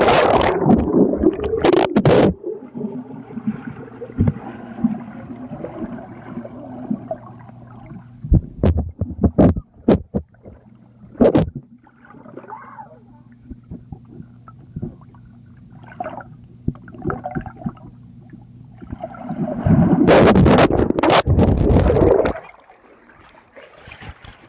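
Pool water splashing and sloshing close to the microphone, loudest in the first two seconds and again near the end. Between the bursts a steady low hum runs on, broken by a few sharp knocks.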